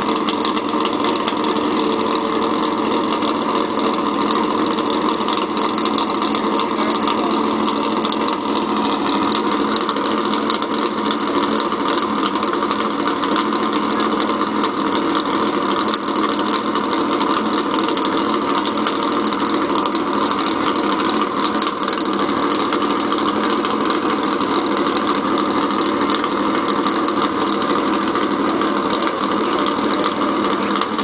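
Race car engine idling steadily at the starting line, with small drifts in revs.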